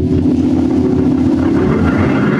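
Live rock band playing a loud, low, rumbling passage as a song gets under way.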